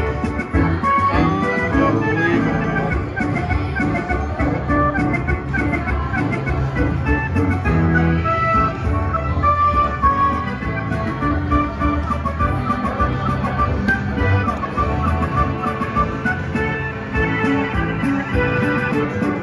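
Buffalo Gold slot machine playing its bonus win-celebration music continuously while the win meter counts up during the free games.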